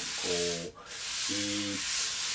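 Two wire drum brushes swept in circles over a coated drum head, a steady swishing hiss that breaks off briefly a little under a second in. This is the jazz brush-sweep stroke, the hands crossing as they circle.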